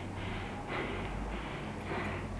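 A cyclist's breathing while riding, over steady low wind rumble and road noise on the microphone.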